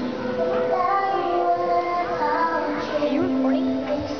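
Music with children singing a melody.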